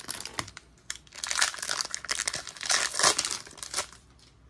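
Foil wrapper of a 2022-23 Donruss Basketball trading-card pack crinkling as it is handled in the hands, in two louder spells, about a second in and again about three seconds in.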